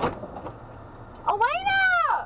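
A cat meowing once: a single drawn-out, high-pitched meow about a second long that rises and then falls, starting past the middle.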